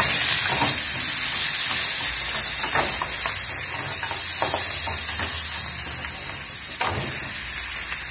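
Mushrooms, bacon and onion sizzling in a frying pan just splashed with red wine, with a spatula stirring and scraping the pan in short clicks and scrapes. The sizzle eases slightly as it goes.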